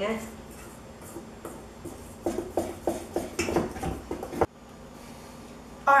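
Small wire whisk clinking and rattling against a stainless steel mixing bowl as thick powdered-sugar icing is stirred, an irregular run of light knocks that stops suddenly about four and a half seconds in.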